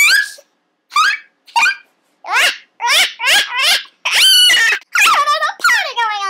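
A high, squeaky, pitch-shifted-sounding voice making short wordless squeals and laughs, about a dozen in quick succession with brief gaps between them.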